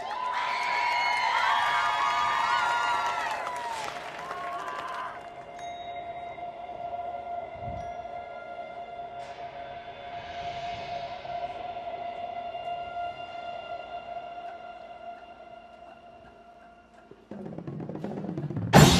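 Crowd cheering and whistling for the first few seconds, then a single held musical note that slowly fades. Near the end a loud drum corps percussion section comes in.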